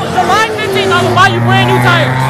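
A car engine running at steady revs: a low, even drone that starts about half a second in and holds under crowd talk.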